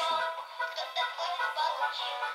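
A children's song playing from the small built-in speaker of a book's toy piano in melody mode. The sound is thin and tinny, with no bass.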